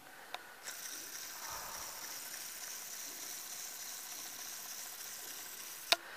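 A video camera's zoom motor running as the lens zooms out: a steady mechanical whine for about five seconds, opening with a soft click and ending with a sharp click.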